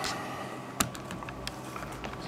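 A few light clicks on a laptop's keys, one sharper click just under a second in.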